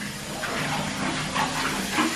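Bathtub tap running, water pouring steadily into the tub, getting louder about half a second in.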